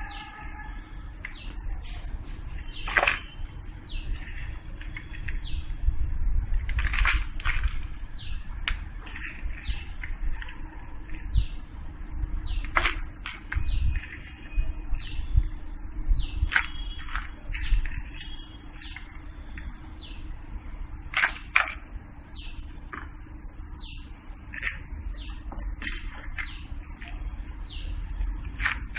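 Small birds chirping repeatedly with short, quick falling calls, over the rustle and scrape of hands scooping potting soil into a plastic flower pot and pressing it down, with a few louder knocks against the pot.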